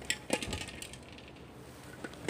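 A lobster net being handled out over a boat's deck, giving a few sharp clicks and clinks in the first second as its fittings knock against the deck and each other.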